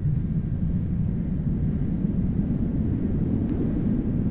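Steady low drone of an aircraft engine, a continuous rumble with no breaks.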